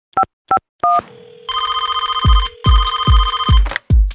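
Phone keypad tones, three short two-tone beeps as a number is dialed, then a phone line ringing in two warbling bursts over a low hum. A kids'-song kick drum beat comes in about halfway through, under the second ring.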